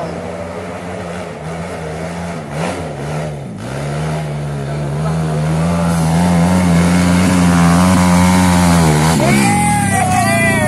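Dirt bike engine labouring up a steep dirt hill climb, its steady note growing louder as it comes closer and holding high from about six seconds in. Just after nine seconds the note breaks and drops away as the bike loses the climb and flips over backward.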